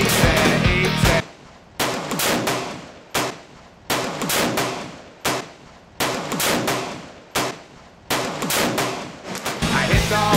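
Rock music cuts off about a second in, followed by a string of about seven heavy revolver shots from a Smith & Wesson 460V, roughly one a second, each report ringing out and fading under the range's roof.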